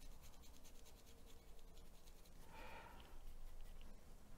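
Faint scratching of a small paintbrush working acrylic paint onto canvas, in quick light strokes, with a short soft rustle a little after halfway.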